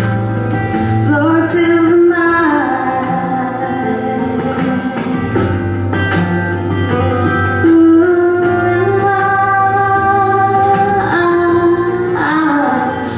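A woman singing a slow song into a microphone with instrumental accompaniment, holding several long notes with vibrato.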